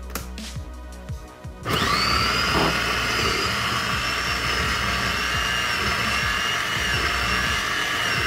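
Pampered Chef Electric Twist & Chop food processor motor starting suddenly a little under two seconds in and then running steadily with a high whine as its blades chop red bell pepper.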